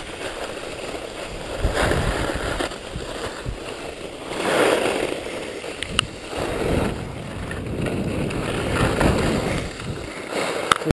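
Skis sliding and carving on groomed snow, a rushing noise that swells and fades with each turn, heard from a camera on the skier's head. A sharp click about six seconds in.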